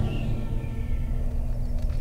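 Dramatic film-trailer score over the title card: the low rumble of a deep boom dies away under held tones that slowly fade.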